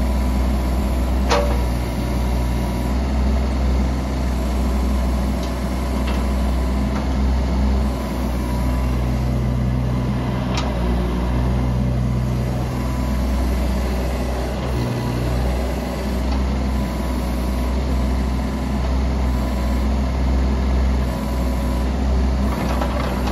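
JCB 15C-1 mini excavator's diesel engine running steadily while the boom, arm and bucket are worked and the machine swings, with a low hum that comes and goes as the hydraulics take load. Two sharp clicks, a second or so in and about halfway through.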